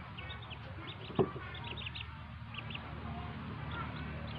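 Newly hatched ducklings peeping: many short, high peeps in quick runs from several birds at once. A single sharp knock sounds about a second in, over a steady low hum.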